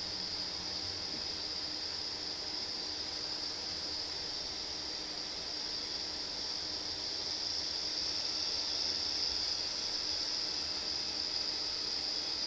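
A steady high-pitched hiss runs unbroken, with a faint low hum beneath it.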